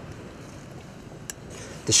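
Quiet steady hiss of a lit canister gas stove and wind, with one faint short tick about a second and a half in.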